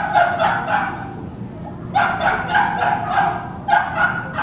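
Dog barking in three quick runs of short barks, each run about a second long with brief pauses between.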